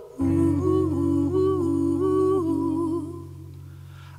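A man and a woman singing wordless vocal harmonies over a low held note, the two voice lines moving together in stepped pitches, haunting in tone. The voices fade out about three seconds in while the low note holds.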